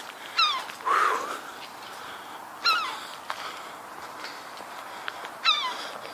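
An animal calling outdoors: three short cries that each fall in pitch, a couple of seconds apart.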